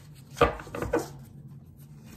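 A deck of oracle cards shuffled in the hands: a quick run of four or five crisp card slaps within the first second, the first the loudest.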